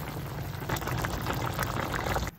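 Chicken stew in a thick red braising sauce bubbling steadily at a boil in a wide pan, a dense crackle of popping bubbles.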